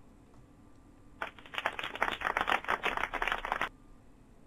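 Computer keyboard typing: a rapid run of clicks lasting about two and a half seconds, starting just over a second in.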